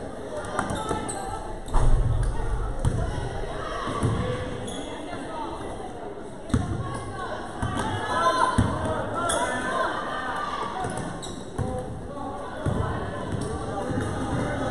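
Basketball game in a gym: a basketball bouncing on the court amid the voices of players and spectators, with a few sharp thuds, the loudest about two seconds in.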